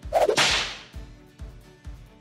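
Whoosh transition sound effect: a sudden swish that starts sharply and fades away over about half a second, followed by a few faint clicks.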